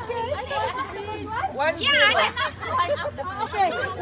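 Only speech: several women chattering, their voices overlapping.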